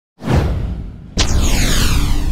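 Two whoosh sound effects from an animated logo intro. The first swells in and fades over about a second. The second starts suddenly about a second in, with a deep rumble under it and a falling sweep.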